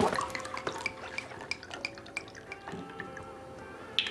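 A scatter of light, irregular clicks, like drips, over faint sustained tones.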